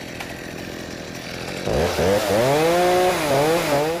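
Gasoline chainsaw running, then revved up and down several times from a little under halfway in.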